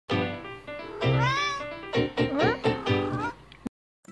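A cat meowing several times, with one long rising-and-falling meow about a second in and shorter rising meows after it, over background music; the sound cuts off suddenly just before the end.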